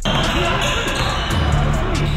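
Basketball game in a gym: the ball bouncing on the hardwood court amid a steady din of voices, with music playing over it.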